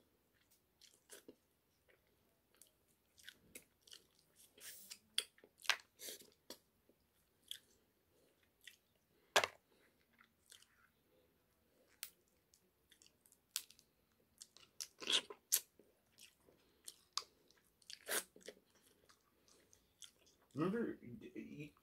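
Eating shellfish from a seafood boil: shells cracked and picked apart by hand, with chewing. A scatter of sharp cracks and clicks, the loudest a few seconds apart in the middle and latter half.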